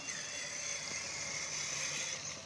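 Electric motor and gear drivetrain of a Traxxas Summit RC truck whining steadily under power as it drives through mud and water, the pitch dipping briefly at the start and then holding.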